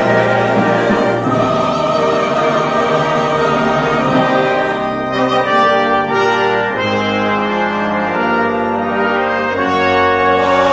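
A choir singing with a brass ensemble of trumpets and trombones, in slow, sustained chords that change every few seconds.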